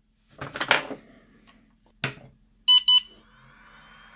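Rustle of cables being handled, then a sharp click about two seconds in as the 24 V power supply is plugged in. Two short electronic beeps follow from the ISDT Q6 charger powering up, over a faint steady hum.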